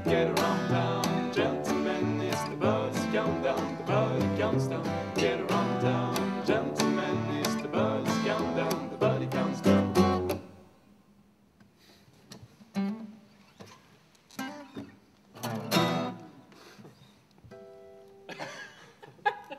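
Acoustic guitars strummed with a cello playing the bass line, the song's final bars ending abruptly about ten seconds in. After that only a few short, fainter sounds break the quiet.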